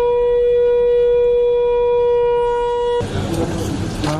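A conch shell (shankh) blown in one long, steady note, marking the ceremonial opening; it cuts off abruptly about three seconds in, giving way to the noise of the hall.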